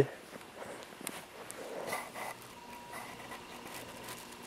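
Faint handling noise: soft rustling and a few small clicks as a squirming dachshund puppy is held by the head with her lip pulled back.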